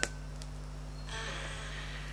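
Wooden spoons in a cast-iron pot of porridge: a sharp clack as a spoon strikes the pot, a fainter tap just after, then about a second of scraping as the porridge is scooped out.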